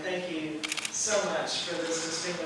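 A camera shutter firing a quick burst of about five clicks just over half a second in, heard under a speaker's voice.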